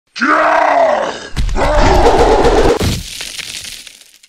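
A deep, straining grunt-groan voice, twice: effort sounds for heavy pushing. The second has a low rumble under it, and it dies down to a quieter stretch near the end.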